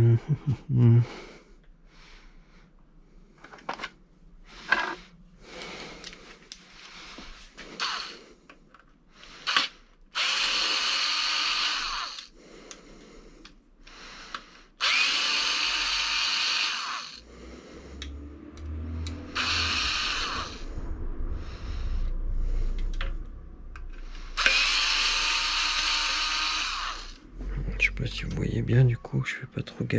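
Cordless electric screwdriver running in four bursts of about two seconds each, backing screws out of an electric scooter's wheel cover, with light clicks of handling between the bursts.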